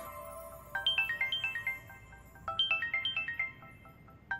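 Smartphone ringtone announcing an incoming call: a short, quick run of high notes played twice, the second run starting about two and a half seconds in.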